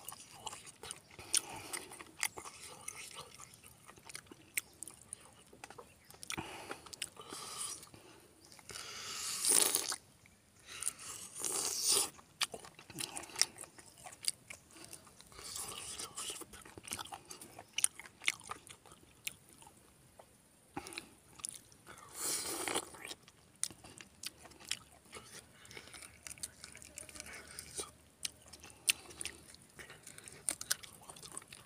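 Close-up chewing and crunching of spicy pork belly with rice eaten by hand: wet mouth clicks and smacks, with a few louder noisy bursts about a third of the way in and again near three-quarters.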